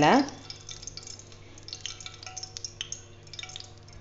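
Faint crackling of curry leaves frying in hot oil in a steel pan, with light ticks as a perforated steel ladle lifts and shakes them, over a faint steady hum.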